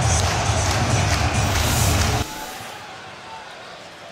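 Football stadium crowd cheering a home goal, loud and dense, cutting off abruptly a little over two seconds in to a much quieter stadium background.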